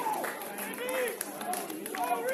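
Footballers shouting to each other across the pitch during open play, short distant calls, with a couple of sharp knocks.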